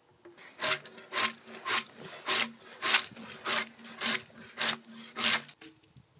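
Hand tool worked in even strokes along a squared wooden log: nine sharp strokes, a little under two a second, stopping near the end.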